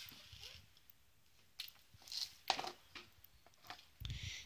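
Loose propolis granules scraped up with a card off a tablecloth and tipped into a plastic tub: a few faint, short scrapes and patters, spaced irregularly.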